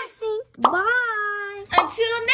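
Edited-in outro sound effects: a sharp pop about half a second in, then a long voice-like tone that rises and falls, and a second pop near the end.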